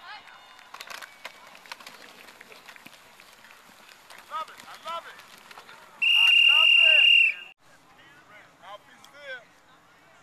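A whistle blown in one steady, loud blast of about a second and a half, blowing the play dead after the tackle. Before it there is a clatter of knocks from players colliding at the snap, with boys shouting.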